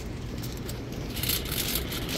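Aluminium foil hot-dog wrapper crinkling as it is handled, a crackly rustle that picks up about halfway through, over a steady hum of city street traffic.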